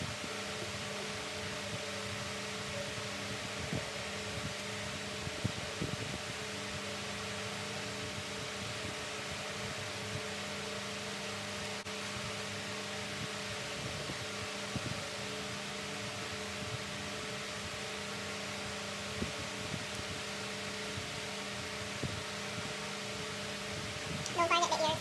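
Electric standing fan running steadily: an even whir of air over a low motor hum, with a few faint taps scattered through.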